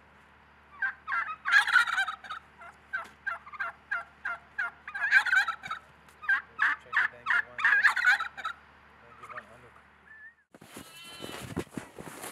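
Domestic fowl calling in a long run of short, rapid calls, grouped in several bursts, with the loudest bursts around the middle. Near the end the calls stop and footsteps crunch through snow.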